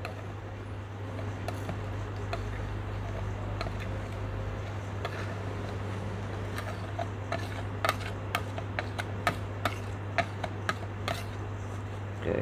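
A metal spoon scooping granulated sugar off a plastic plate and tipping it into a glass: light, irregular clicks and taps of spoon on plate and glass, mostly in the second half, over a steady low hum.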